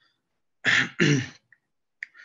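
A man clears his throat in two quick rasps, heard over a video-call connection.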